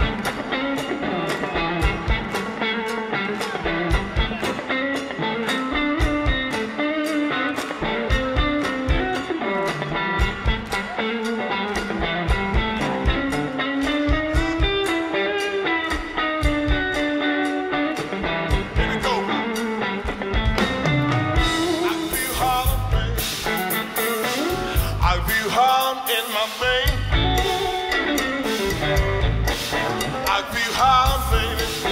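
Live electric blues band: an electric guitar plays bending lead lines over bass and drums. A steady tick about four times a second keeps time, and from about two-thirds of the way through the drums open up with cymbals and the band fills out.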